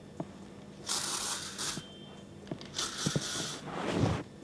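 Hair spray being sprayed onto hair: two hissing bursts of just under a second each, about two seconds apart, with a few faint clicks between.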